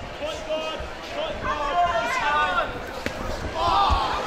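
Raised voices shouting from ringside during a boxing bout, over dull thuds of feet and gloves on the ring canvas, with one sharp crack about three seconds in.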